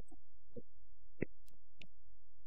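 A steady low hum, with a few faint, brief sounds scattered over it.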